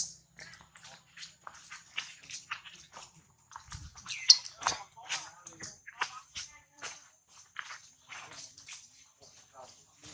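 Macaques scuffling and moving through dry leaves and roots close by, a string of short rustles and clicks, with one sharp rising squeak about four seconds in. A faint high insect drone runs underneath.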